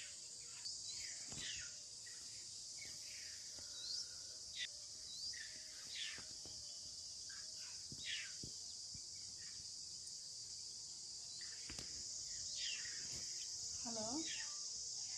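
Steady high-pitched insect drone with short bird calls that fall in pitch, scattered through it every second or two.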